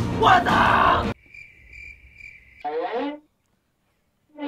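Music cuts off abruptly about a second in, leaving a lone cricket chirping in a steady high trill, the stock sound effect for an awkward silence. Near three seconds a person lets out a short vocal sound.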